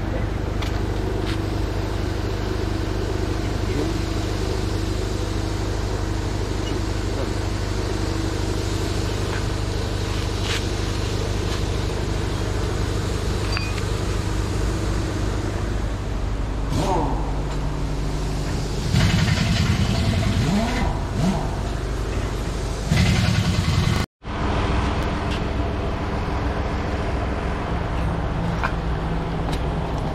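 A vehicle engine idling with a steady low drone, with a few sharp metallic clinks from tools at a truck's dismantled front wheel hub and brake caliper. A voice speaks briefly about two-thirds of the way in.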